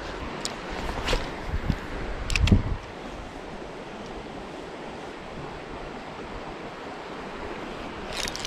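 Steady rush of flowing creek water, with a few light clicks and knocks from handling the fishing rod and reel in the first three seconds.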